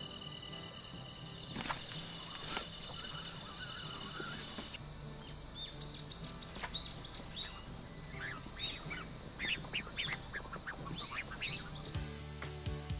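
Night outdoor ambience with a steady faint high trill. From about five seconds in comes a run of quick, repeated chirping animal calls.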